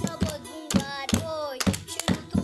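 A young boy singing a folk song in the Chitrali language, unaccompanied, with sharp hand claps keeping the beat.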